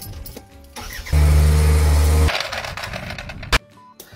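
Skid steer loader being started: a loud steady engine sound comes in suddenly about a second in and lasts just over a second, then drops to a weaker running noise that ends in a sharp click near the end.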